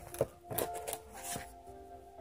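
A comic book in a plastic sleeve being handled and pressed into place, with a few sharp crinkles and taps in the first second and a half. Steady background music plays throughout.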